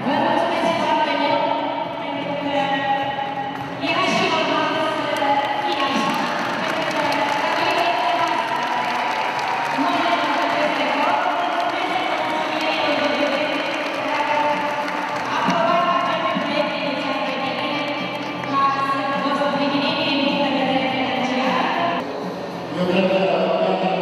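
Singing voices with music, echoing in a large hall, mixed with some speech.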